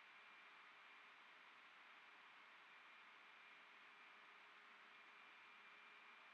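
Near silence: a faint steady hiss with a thin steady hum.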